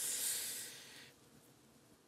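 A man blowing out one long breath, a breathy hiss that fades out about a second in, as he catches his breath after drinking beer too fast.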